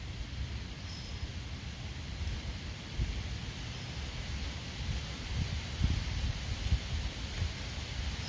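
A steady low rumble of wind on the microphone, with a few faint scrapes and taps of a small metal pick working into a dried mud dauber tube.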